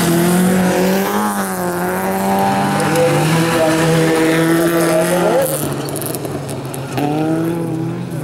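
Bilcross race car engines running hard on a dirt track, the engine note rising and falling with the throttle as the cars corner, with a fresh rise in revs about seven seconds in.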